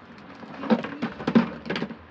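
Handling noise: a cluster of short knocks and rustles as a plastic spool of fishing line is picked up and lifted.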